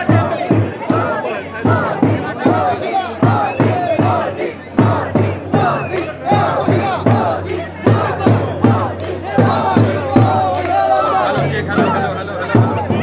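A crowd shouting and cheering over a drum beaten in a steady rhythm, about two to three strokes a second.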